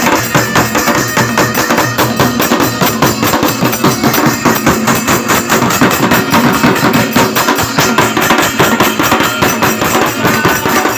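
Devotional bhajan music played live on hand drums, with a keyboard instrument, in a fast, steady beat.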